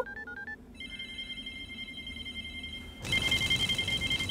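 Mobile phone keypad beeps as a number is dialled, then a steady electronic ring; about three seconds in, a louder trilling mobile ringtone starts up.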